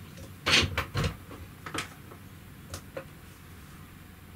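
A handful of short clicks and knocks of handling, loudest about half a second to a second in, then fainter ones near the end, as a mains cable is plugged into a cable tester.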